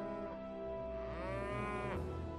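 Cattle mooing: one long moo starting about a second in, over soft background music.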